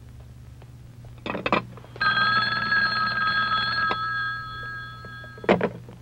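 A telephone bell ringing: one long ring of about two seconds that then fades away. A couple of knocks come just before it, and another sharp knock near the end.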